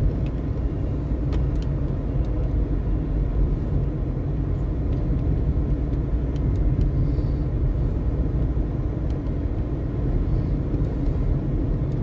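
Steady low road and engine rumble heard inside a moving car's cabin while cruising.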